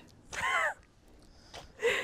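Two short vocal sounds from a person, like a laughing gasp: one about half a second in, with a rise and fall in pitch, and another near the end with a falling pitch that fades away.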